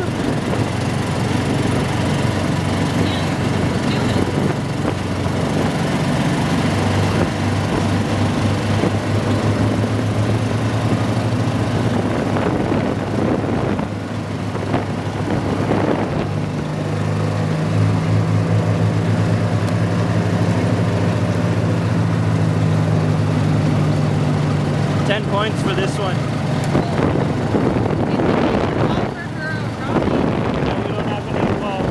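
Gator utility vehicle's engine running steadily while driving over a gravel road, with tyre and wind noise; the engine note rises about seven seconds in and again about sixteen seconds in, then drops back near the end.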